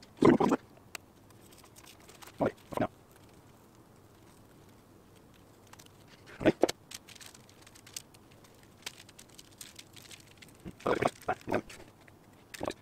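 Masking tape being peeled off a painted welding helmet in short ripping bursts: one at the start, two around a couple of seconds in, one in the middle, and a quick cluster near the end.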